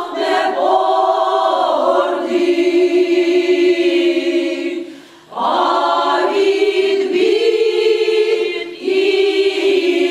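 Mixed choir of women's and men's voices singing unaccompanied in slow, long-held chords. The singing breaks off for a breath about halfway through, with a shorter break near the end.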